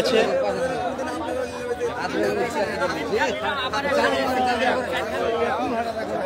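Several people talking at once in overlapping, indistinct market chatter.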